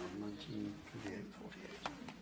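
Faint, low voices murmuring in a room, with one short click near the end.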